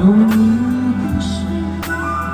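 Live ballad music through an outdoor concert PA: one long held melody note, starting with a short rise and lasting about a second, over steady band accompaniment.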